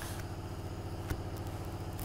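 A small engine running steadily at idle, a fast even low pulse, with a faint click about a second in.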